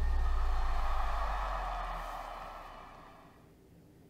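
The close of a live pop concert performance: a deep, steady bass note with a wash of noise above it, fading out over about three seconds to near quiet.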